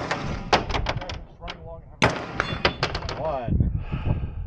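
Two quick strings of gunshots, each shot about a sixth of a second after the last. The second string starts about two seconds in.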